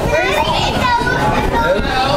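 Overlapping chatter of several young children and adults talking at once, a steady babble of voices with no single clear speaker.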